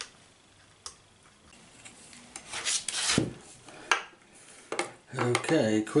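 Small metal parts and a steel ruler handled on a workbench: a single click, then scraping and rustling, a knock and a few light clicks as the ruler is laid across an aluminium ring to measure spacer pillars.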